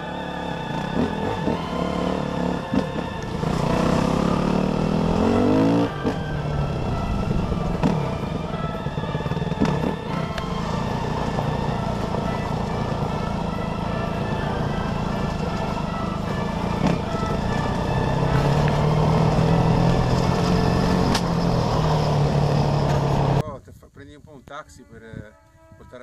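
Dirt bike engine running under way on a trail, revving up with rising pitch a few seconds in and then holding a steady drone. It cuts off abruptly just before the end.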